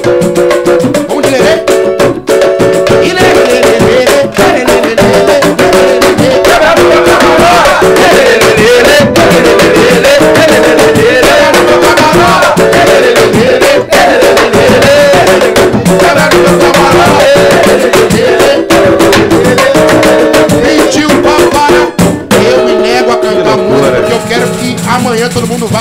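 A pagode samba song performed live: voices singing a melody over samba percussion with a rattling shaker-like sound, continuous throughout.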